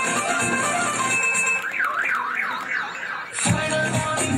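Recorded dance music played over a loudspeaker. About a second and a half in the beat drops away and a siren-like electronic wail rises and falls several times, then the full beat with bass comes back in near the end.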